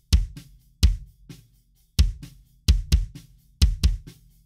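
Recorded acoustic kick drum playing back, doubled by a hard-hitting kick sample triggered from MIDI in Logic's Quick Sampler. About seven deep kick hits fall in an uneven, unquantised rhythm, two in quick succession near the end, with fainter drum hits between them.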